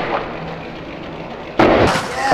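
Skateboard landing hard on concrete: one heavy slam about one and a half seconds in, after a steady hiss.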